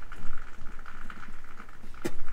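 A man blowing hard into a Land Rover Defender's rear windscreen-washer hose, a strained rush of breath with no air getting through, loudest just after the start: the hose is completely blocked somewhere.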